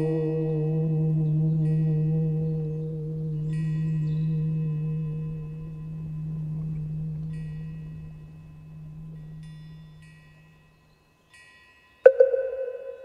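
A deep struck bell rings out and slowly fades away to near silence, with short, high chime tinkles sounding several times over it.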